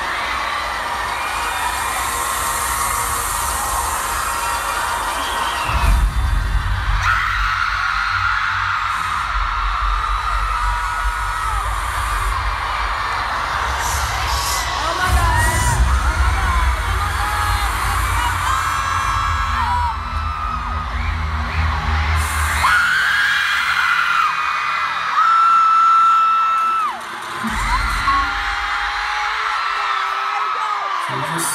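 Arena crowd screaming through a concert's intro music, with deep bass pulses from the PA. The bass comes in about six seconds in, cuts out near the end, and returns once briefly.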